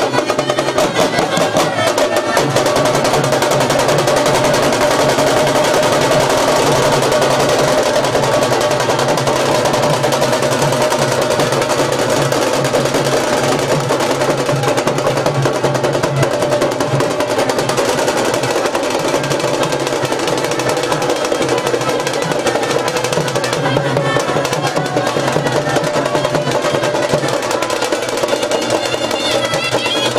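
Street band playing: drums in a fast, continuous roll with a held melody from horns over it, steady and loud throughout.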